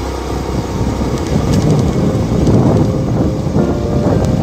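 A motorbike riding along a rough gravel road, its engine and tyre noise mixed with wind buffeting the microphone. The noise grows louder about a second in.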